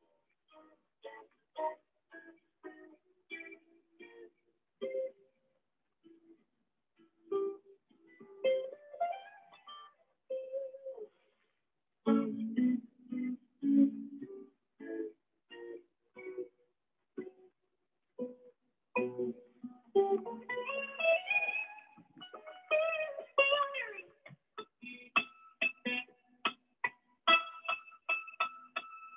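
Electric guitar played as single-note lead phrases, with several rising slides or bends and a quicker run of notes in the second half, heard through video-call audio.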